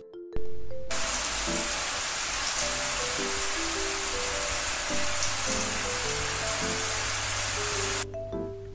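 Shower spray sound effect: a steady hiss of running water that starts about a second in and cuts off suddenly at the end, over soft background music.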